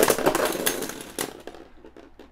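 Pieces of a burst Dread Fafnir Beyblade (layer, disc and driver) spinning and skittering on a plastic Beyblade stadium floor: a fast clattering rattle that fades away, with a couple of sharp clicks about two-thirds and one second in, then only faint ticks as the parts settle. The top has burst apart in battle, which it does very easily.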